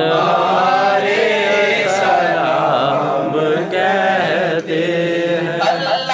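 A group of men chanting a naat together in devotional recitation, their voices held in long, wavering sung lines.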